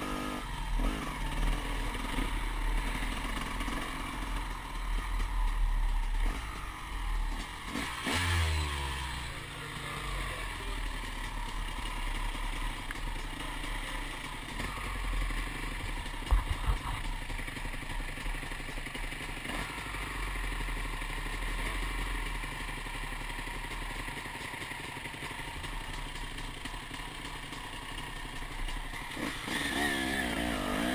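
KTM 300 two-stroke enduro motorcycle engine running at low revs and idling for most of the time, heard from a helmet-mounted camera, with one sharp knock about halfway through.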